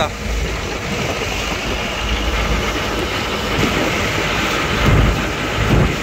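Boat engine running steadily under way, with water rushing past the hull. Wind buffets the microphone with a couple of low gusts near the end.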